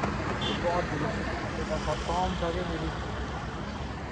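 Steady low hum of a motor vehicle running, with faint voices in the background.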